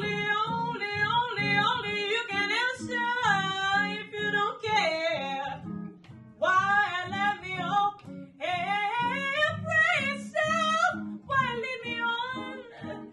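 A woman's voice sings wordless, fast-moving scat phrases in three runs, with short breaks near the middle. A jazz guitar plucks an accompaniment underneath.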